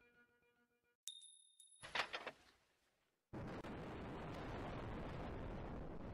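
Title-sequence sound effects: faint chime notes, then a sharp metallic ping with a high ringing tone about a second in, and a loud clink about a second later. A little past the middle a steady rushing roar starts suddenly.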